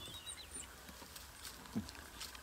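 African wild dogs moving about and feeding in dry grass and leaf litter: soft rustling with scattered light clicks and ticks, and a few faint high chirps that fade out about half a second in.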